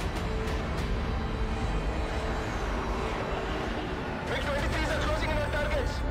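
Dramatic film score over a continuous low rumble, with a pitched vocal line rising over the music in the last two seconds.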